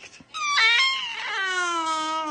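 Baby of about five months giving one long, high-pitched vocal squeal that starts about a third of a second in and slides down in pitch.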